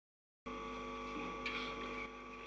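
Silence, then about half a second in a steady electrical mains hum cuts in abruptly and carries on evenly.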